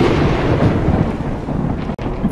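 A loud, rumbling noise effect, fading slowly.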